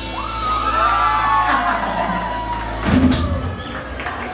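A live band holds its final chord over a low bass note, which cuts off about three seconds in, while the crowd cheers and whoops.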